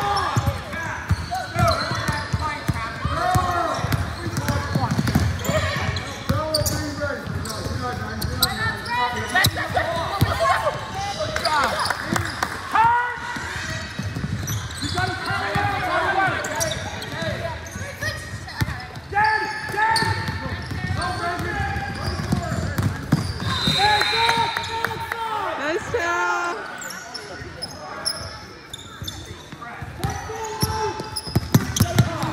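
A basketball being dribbled on a hardwood gym floor, a run of repeated bounces amid players' and spectators' voices.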